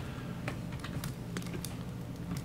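Scattered key taps on a laptop keyboard, about half a dozen irregular clicks, over a steady low hum.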